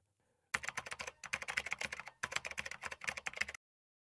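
Computer keyboard typing sound effect: a rapid run of key clicks with two brief breaks, starting about half a second in and stopping shortly before the end.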